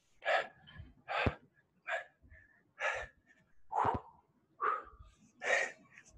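A man breathing hard from exertion during a set of heavy barbell squats: a quick series of loud, gasping breaths, about seven in six seconds.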